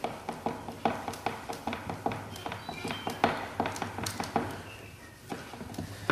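Hand screwdriver turning small brass screws into a brass hinge on a wooden hive box, with a run of light, irregular clicks several times a second that thin out near the end.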